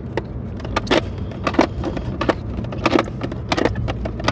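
Irregular sharp plastic clicks and knocks from the swinging handle of a plastic ice chest being worked up and down, over the steady low rumble of a moving car.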